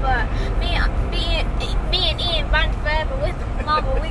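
A child's high voice in short sung and spoken phrases over the steady low rumble of a car cabin.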